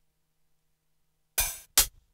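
Near silence, then about a second and a half in, two short, bright drum hits played on the Akai MPC One, the first ringing a little longer and the second coming quickly after.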